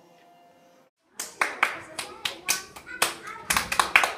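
Two children playing a hand-clapping game: quick rhythmic claps of palms, about three a second, with their voices between the claps. The claps start about a second in, after faint music fades out.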